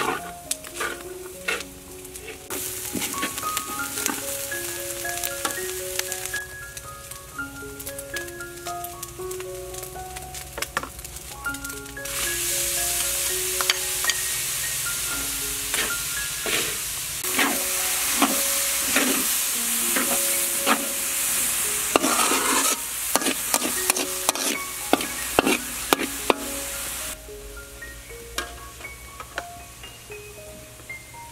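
Corn kernels frying in a large steel wok: a sizzle, with the spatula scraping and clinking against the pan as the corn is stirred. The sizzle comes in a couple of seconds in, grows louder from about twelve seconds and falls away a few seconds before the end.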